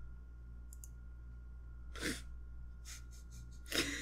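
Steady low electrical hum with a short breathy exhale from a person about two seconds in, then laughter starting just before the end.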